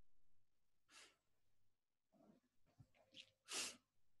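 Near silence with a few faint, short breathy sounds from people exhaling as they move on floor mats. The clearest comes near the end.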